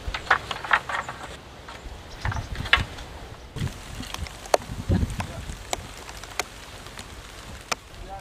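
Scattered, irregular wooden clicks and knocks as the wooden lattice wall and frame of a Mongolian ger are handled and taken apart by hand, with a few low rumbles in between.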